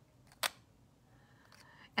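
Magnetic lipstick cap snapping shut onto its tube: one sharp click about half a second in.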